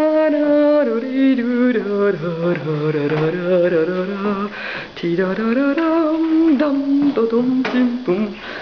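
A voice singing a melody loudly, holding notes that step down in pitch and then climb back up, with vibrato.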